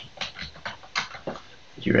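Typing on a computer keyboard: a quick run of about eight keystrokes.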